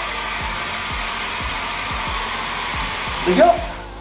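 Wall-mounted hair dryer on a coiled cord blowing with a steady rush of air, then cutting off near the end.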